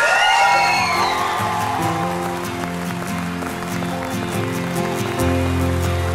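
Background music of sustained held chords, with a deep bass note coming in about five seconds in. A few fading vocal glides are heard in the first second or so.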